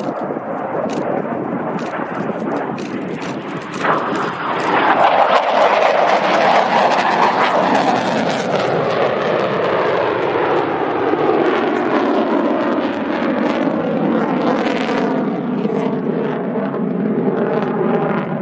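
Military jet aircraft flying past: a loud engine roar with sharp crackles early on, swelling about four seconds in and staying loud, with a sweeping, falling whoosh as it passes.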